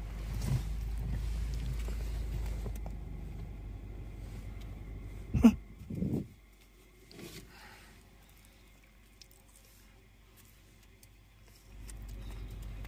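Steady low rumble of a car on the road, broken by two loud knocks about five and six seconds in, after which the rumble stops and it falls to near silence.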